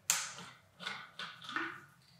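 Handling noise from car parts and their packaging: a sharp knock just after the start, then a few short rustles and scrapes.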